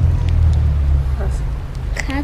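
Low rumble of a motor vehicle passing on the street, swelling at the start and easing off after about a second and a half.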